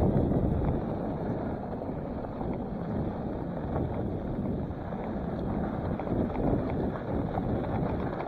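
Wind noise on the microphone over the steady rumble of skinny mountain-bike tyres rolling fast down a dirt trail, with small rattles and clicks from the bike over the bumps. The bike is an older cross-country bike with about 100 mm of front suspension only.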